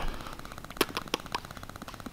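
A few sharp clicks, about four in quick succession in the middle, over a faint, fast rattling tick.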